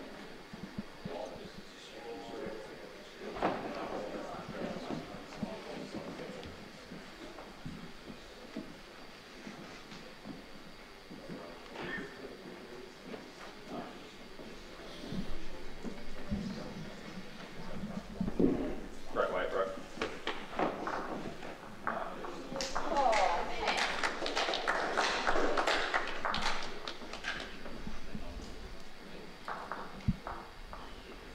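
Indistinct voices echoing in a large hall, loudest about two-thirds of the way through, with a few light knocks and thuds between them.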